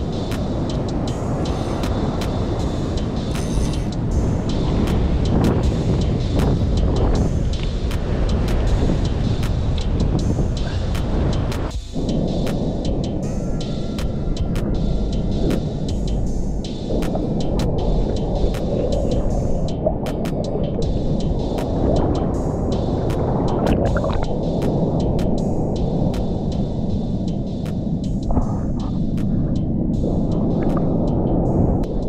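Muffled, rumbling water noise from a camera held under the surface of a rock pool, with scattered sharp clicks.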